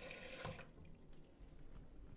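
Single-lever mixer tap running a thin stream of water into a ceramic washbasin and down the drain, shut off about half a second in.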